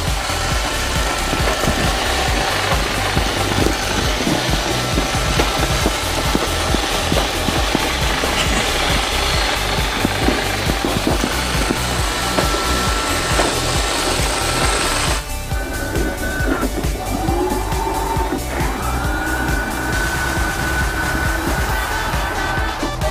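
bObsweep PetHair robot vacuum running, a steady motor noise, with background music under it. About fifteen seconds in, the machine noise drops out and the music carries on alone.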